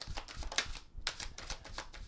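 A tarot deck being shuffled by hand: a quick run of light card clicks and slaps, about five a second, with a brief pause about a second in.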